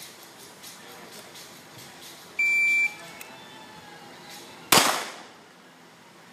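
An electronic shot timer gives one steady, high-pitched start beep lasting about half a second, and about two seconds later a single loud shot from an IPSC Open-division race pistol.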